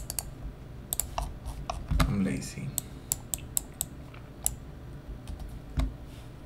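Computer keyboard being typed on: irregular key clicks, some louder than others, with a short low sound about two seconds in.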